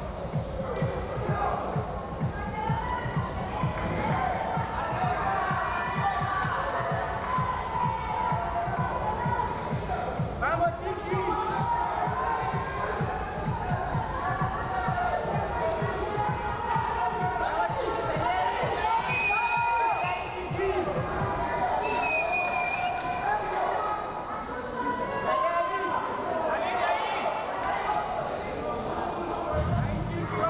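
Several voices shouting in a large hall during a wrestling bout, over rapid, irregular low thuds that thin out about twenty seconds in.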